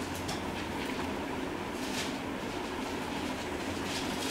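Steady background rumble and hiss with a low hum and a few faint clicks, no speech.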